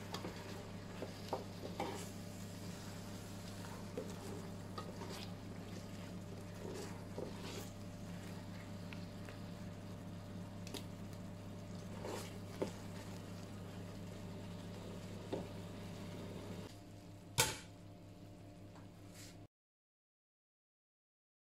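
Sliced apples cooking in melted butter in a stainless steel pot, bubbling quietly, while a wooden spoon stirring them scrapes and taps against the pot, over a steady low hum. Near the end there is one sharp knock, and the sound then stops.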